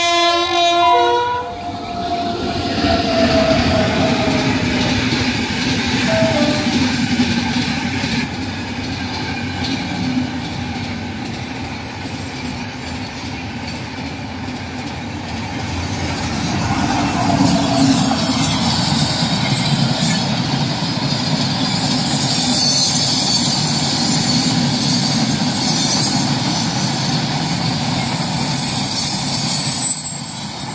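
An Indian express train passing at speed: its locomotive horn blasts suddenly at the start, and a lower tone slides down over the next few seconds. Then comes the steady rumble and clickety-clack of the coaches on the rails, with thin high wheel squeals in the second half.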